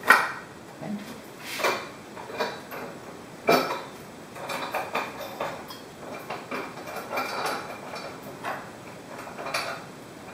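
Aluminium T-slot extrusion bars of a screen-stretching jig being slid and pushed into place against an aluminium screen frame, giving irregular light metallic clacks and short scrapes.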